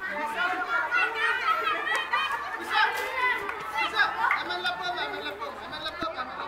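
Many children's voices chattering over one another, a crowd of overlapping talk and calls.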